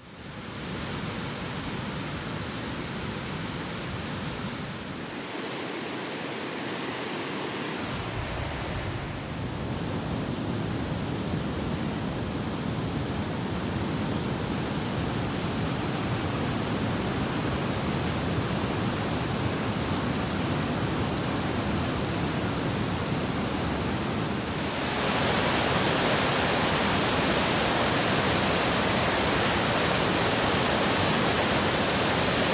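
Steady rushing water of a mountain waterfall and snowmelt cascade, shifting in level a few times and loudest over the last five seconds.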